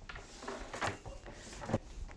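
A bundle of guitar instrument cables handled and shaken, a soft rustle with a couple of short knocks, one a little before the middle and one near the end.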